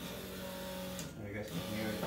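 A man's wordless, drawn-out voice in two stretches: a held steady note for about a second, then a lower one near the end.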